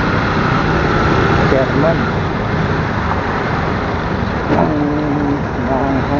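A motorcycle engine running steadily amid road traffic noise while riding through traffic. An indistinct voice comes through briefly about a second and a half in and again near the end.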